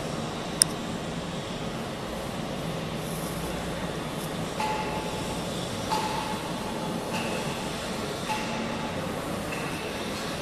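Welded square pipe roll forming line running: a steady mechanical drone with a low hum from the gearbox-driven forming stands. A sharp click comes under a second in, and from about halfway a short whining tone comes and goes several times.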